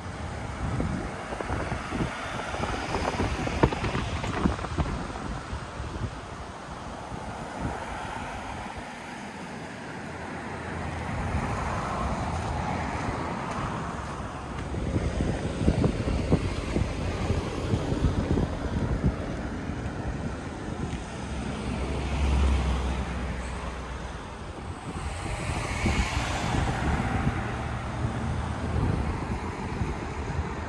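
Wind gusting on the microphone, with cars passing now and then on the two-lane highway alongside.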